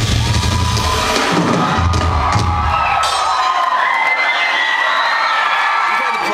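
Live band playing loud drums and bass, heard from within the audience; the drums and bass stop about halfway through and the crowd cheers.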